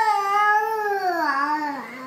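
A baby crying: one long wail that slides down in pitch and fades near the end, the fussy crying of an overtired baby fighting sleep.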